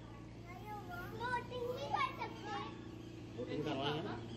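Children's voices chattering and calling out, faint and overlapping, over a steady low hum.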